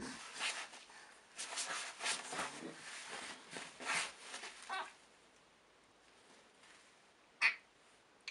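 A baby's excited breathy squeals and gasps, a run of short bursts over the first five seconds, then a pause and one short sharp squeal about seven and a half seconds in.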